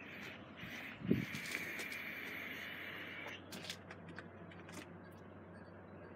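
A long draw on a vape: a steady hiss from about a second in until just past three seconds, opening with a soft thump, then a few small clicks.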